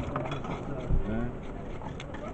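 Fish being scaled by hand with a scraper or knife: repeated rasping scrapes against the scales, with a dull knock about a second in.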